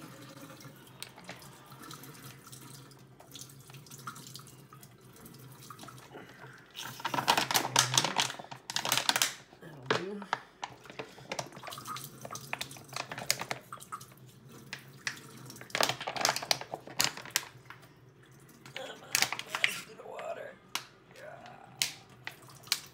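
Filtered water streaming from a Sawyer Squeeze water filter into a stainless steel sink as its soft plastic bottle is squeezed hard, the bottle crinkling loudly in bursts about seven seconds in and again later. The flow is much faster than before now that the filter has been soaked in vinegar and back-flushed to clear calcium buildup.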